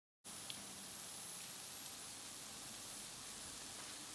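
Dead silence for a moment, then faint steady background hiss with a thin high whine above it.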